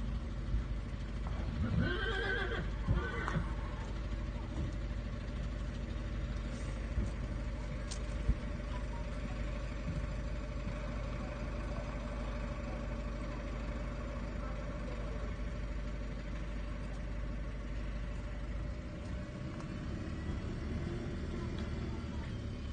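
A horse whinnying once, a wavering call lasting about two seconds that starts a second and a half in. A steady low rumble runs underneath.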